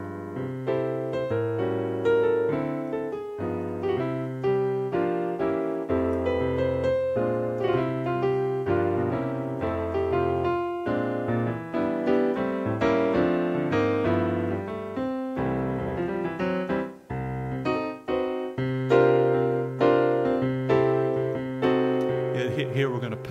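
Roland Fantom synthesizer keyboard playing its acoustic piano sound: jazz chords with a bass line, played with both hands in a steady flow of notes, with two brief breaks about seventeen and eighteen seconds in.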